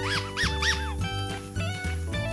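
Three short high squeaks, rising and falling in pitch, from an orange rubber squeaky dog toy being squeezed by hand, over steady children's background music.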